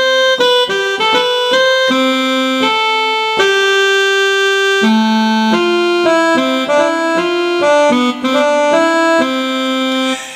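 Electronic keyboard playing a slow single-line melody, one held note at a time, standing in for the saxophonist's tune in the joke. The tune stops abruptly near the end, where he forgets the rest.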